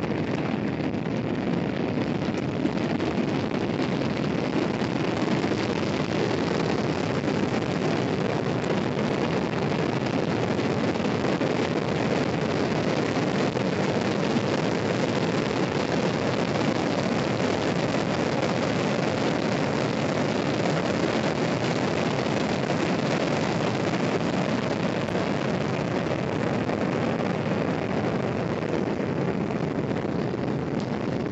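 Steady rush of wind-tunnel airflow at roughly 28 to 52 mph, buffeting an umbrella whose canopy is blown inside out.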